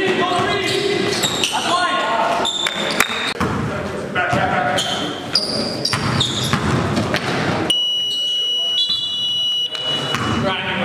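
Basketball game noise echoing in a gym hall: players' indistinct shouts, the ball bouncing and short high sneaker squeaks on the court. About eight seconds in, the game noise drops away under a steady high-pitched tone that lasts about two seconds.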